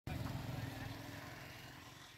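Low rumble of a motor vehicle, such as a passing motorbike or car, fading steadily as it moves away.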